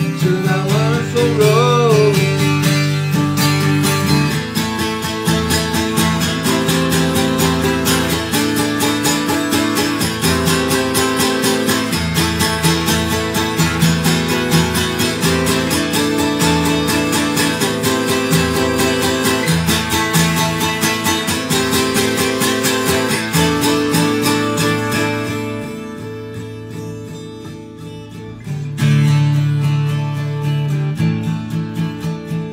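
Acoustic guitar strummed steadily, the chord changing every couple of seconds. It is played softer for a few seconds near the end, then strummed hard again.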